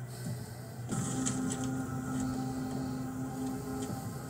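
Soundtrack of an animated series: a steady low drone of held tones that comes in about a second in, with a few faint ticks over it.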